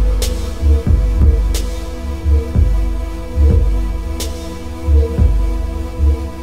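Live electronic music from a laptop and hardware setup: deep pulsing bass throbs over a steady droning hum, cut by three sharp, bright hits.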